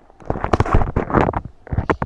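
A quick, irregular run of loud knocks and clatters.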